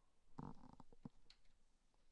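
Near silence: room tone, with a few faint, short soft noises about half a second in.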